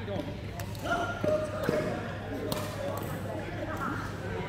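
Badminton play: sharp racket hits on a shuttlecock, one about half a second in and one halfway through, and a brief high squeak of shoes on the court floor about a second in, over people talking.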